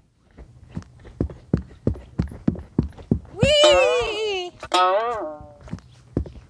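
Footsteps thudding on the wooden plank deck of a swinging suspension bridge, about three a second. About three and a half seconds in, a woman's voice gives two high, drawn-out whoops that rise and fall in pitch; these are the loudest sounds.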